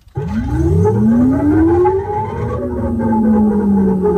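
A siren-like wail in a hip-hop remix: one long tone that rises over about two seconds, then slowly sinks, over a low rumble with the drums dropped out.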